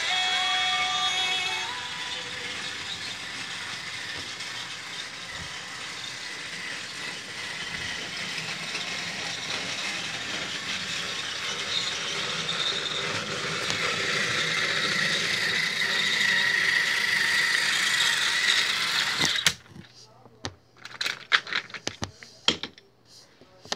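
Battery-powered toy train engine whirring and rattling along plastic track, its gears whining, pulling a truck. The sound grows louder as it comes closer, then stops abruptly near the end. A few sharp clicks and knocks follow as the toys are handled.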